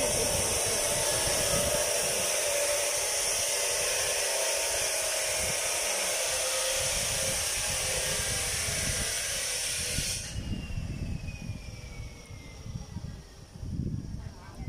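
Wind buffeting the microphone under a steady high hiss. The hiss cuts off abruptly about ten seconds in, leaving only the rumbling gusts.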